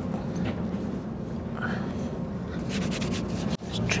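Hands being wiped with a wet hand towel, soft rubbing and rustling that grows scratchier near the end, over the steady low hum of a Shinkansen bullet-train cabin.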